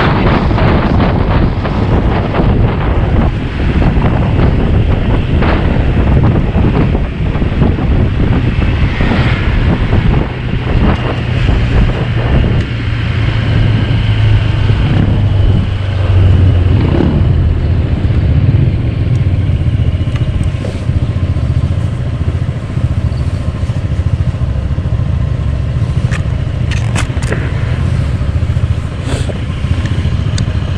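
A 2021 Honda PCX 125 scooter's single-cylinder engine running while under way, with heavy wind noise on the microphone. The sound eases and steadies in the last third as the scooter slows to a stop, with a few sharp clicks near the end.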